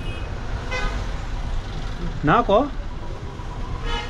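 Road traffic rumbling steadily, with a short warbling vehicle horn about two seconds in, the loudest sound here.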